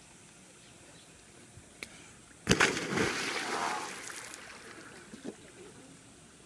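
A person jumping feet-first into a swimming pool with an inflatable ring: one loud splash about two and a half seconds in, then water sloshing that dies away over the next couple of seconds.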